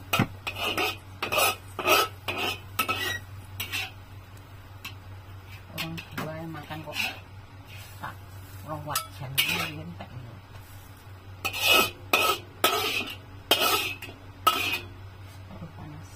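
A spatula scraping and clanking against a wok as fried rice vermicelli is stirred and scooped out, in two bouts of quick strokes: one in the first few seconds and one again near the end, with a few scattered knocks between them.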